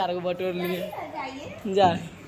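Family members speaking, including a child's voice, with a short loud call near the end.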